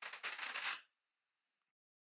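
A short draw on a vape's rebuildable dripping atomizer (Wotofo Nudge RDA): air hissing through the airflow while the coil crackles faintly, for under a second.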